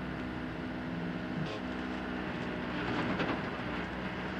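A crane's engine running steadily as it hoists a car, a low, even mechanical drone.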